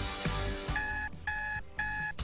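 Electronic alarm clock beeping three times, about half a second apart, starting partway through, over background music.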